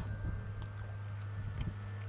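A steady low hum with a few faint ticks.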